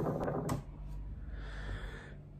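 Low, steady rumbling noise like wind buffeting a microphone, from vlog footage played back on a laptop. The noise comes from a faulty camera microphone (a Rode VideoMic Pro), since it was not windy when the footage was filmed. Two light clicks come near the start.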